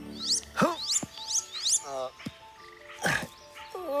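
Three thin, high whistled calls of a male wood duck, each rising and then dropping, in the first two seconds, over background music. A brief whoosh follows about three seconds in.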